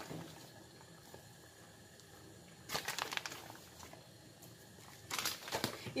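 Plastic bag of grated cheese crinkling in two short bursts, about three seconds in and again near the end, with quiet between.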